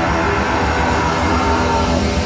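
A hardcore punk band playing loud and heavily distorted in a club, with drums, bass and guitars smeared together and a held guitar feedback tone over the top.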